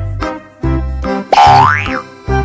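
Bouncy children's-style background music with a regular bass beat; about one and a half seconds in, a loud sound effect slides steeply up in pitch.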